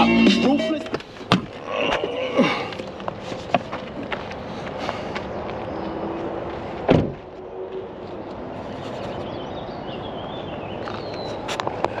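Hip hop music with rapping cuts off about a second in, leaving quiet outdoor background with small clicks. About seven seconds in a single heavy thump: the Toyota minivan's driver door being shut.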